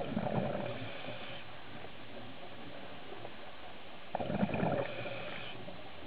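Scuba diver breathing through a regulator underwater: a burst of exhaled bubbles, then the hiss of an inhalation, twice about four seconds apart.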